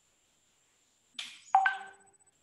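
A short whoosh about a second in, then a bright electronic chime of two quick notes that rings out briefly and is the loudest sound.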